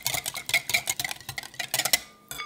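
Egg yolks and vegetable oil being stirred briskly in a bowl to emulsify them, the utensil clicking rapidly and steadily against the bowl.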